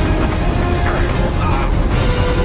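Film soundtrack mix: a music score over the steady low rumble of a moving train.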